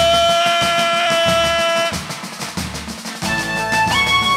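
Toada music from the festival's band: a long held note over steady drumming that ends about two seconds in, a brief passage of drums alone, then a new melody line entering near the end.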